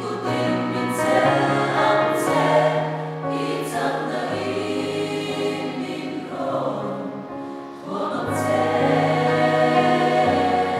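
A large mixed congregation of men and women singing a hymn together in harmony, with long held notes and the occasional hissed 's' of the words.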